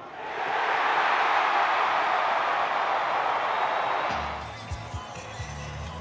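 Baseball stadium crowd cheering loudly for about four seconds, greeting the game-ending strikeout, then fading as music with a repeating bass line comes in.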